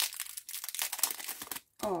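Packaging crinkling and rustling as items are unwrapped by hand, a dense crackle that stops shortly before the end.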